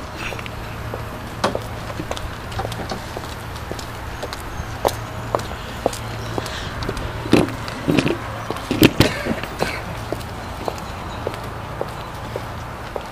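Footsteps on brick paving, with scattered light clicks and knocks and a few louder thuds about seven to nine seconds in, over a steady low hum.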